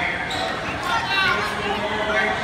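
Voices of coaches and spectators calling out in a reverberant gymnasium, with a few dull thumps spaced about half a second apart.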